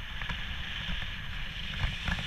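Airflow buffeting an action camera's microphone during a paraglider flight: a steady rush of wind with a low rumble, broken by a few short knocks.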